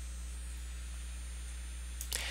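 Steady low electrical hum with a faint hiss under it, the background noise of the recording microphone, with nothing else happening.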